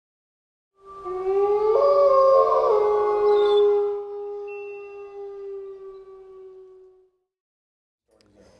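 Wolf howls used as a logo sound effect: long, steady howls at more than one pitch overlapping, starting about a second in, loudest for the first few seconds, then fading away by about seven seconds.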